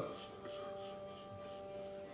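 Faint scraping of a 1966 Gillette Slim Adjustable safety razor drawn over lathered stubble on the neck, over a low steady hum of several tones.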